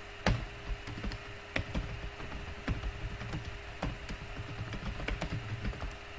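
Typing on a computer keyboard: a run of irregular key clicks, with a faint steady hum underneath.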